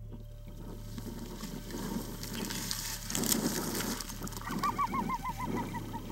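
Coyote barking and yipping at the callers, a territorial challenge from a dog that is not happy. About four and a half seconds in, a quick run of short rising yips comes at several a second over a low rustle.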